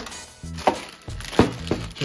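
Plastic toy parts knocking on a table as they are handled: three short knocks, the loudest about one and a half seconds in.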